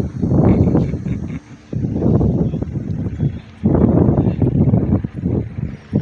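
Wind buffeting the phone's microphone in three long, loud gusts of rumbling noise, with short lulls between them.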